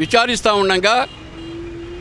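A man speaking Telugu into a handheld microphone for about a second, then a pause filled by a faint steady hum that rises slowly in pitch.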